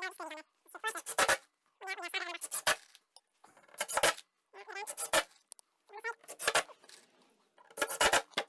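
Cordless impact driver running in about six short bursts of half a second or so, driving 4.5 x 50 mm decking screws through pine fence slats into the gate's ledgers.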